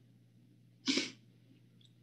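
Near silence broken about a second in by one short, breathy puff from a person close to the microphone.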